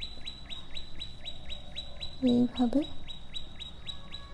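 A high chirp repeats steadily at about four a second, each chirp falling quickly in pitch. A short vocal sound cuts in about two seconds in.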